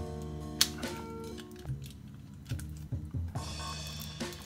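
Background music with steady held notes, over light clicks and rustling as fingers pick at the wrapper on a deck of game cards. One sharp click comes about half a second in, a few more clicks near the three-second mark, and rustling near the end.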